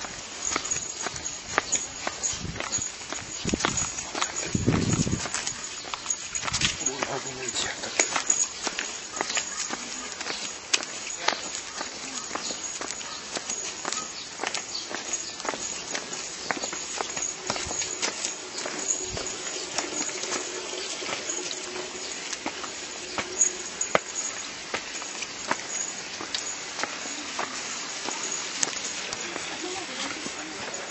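Footsteps of several people walking on a paved path, a steady run of light shoe scuffs and taps.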